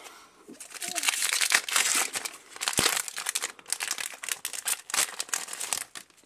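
A foil Pokémon trading-card booster pack wrapper crinkling and tearing as it is ripped open by hand, with one sharp snap about three seconds in.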